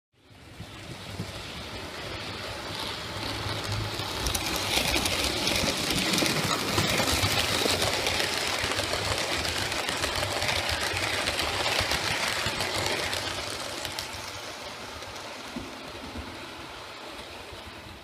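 OO gauge model train running along the track past the camera: the small electric motor and wheels on rails build up, are loudest around the middle, then fade away toward the end.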